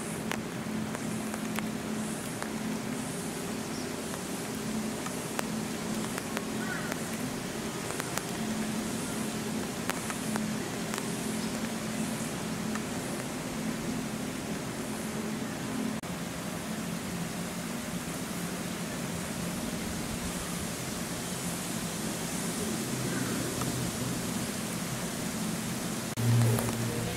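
Steady outdoor background noise with a low hum underneath and a faint high-pitched pulsing that repeats about once a second.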